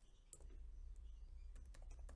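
Faint computer keyboard typing: a scattering of light keystroke clicks over a low hum.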